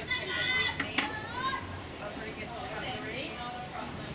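A young child's high-pitched squealing voice in the first second and a half, with a sharp click about a second in, over outdoor chatter.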